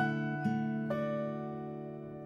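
Soft background music of plucked acoustic guitar notes: three notes in the first second, then they ring on and slowly fade.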